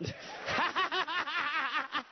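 Laughter: a quick run of short, repeated ha-ha pulses that picks up about half a second in and lasts over a second, reacting to a punchline.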